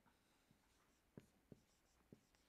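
Very faint whiteboard marker strokes: a few light taps and scratches, the two clearest a little past a second in, over near silence.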